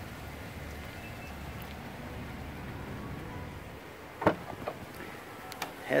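Cadillac SRX power liftgate opening: a low motor hum for about four seconds, then a sharp click followed by a few lighter clicks.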